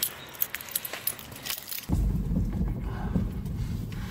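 Light clicks and rustling from handling, then about halfway through a sudden switch to a steady low rumble inside a car's cabin.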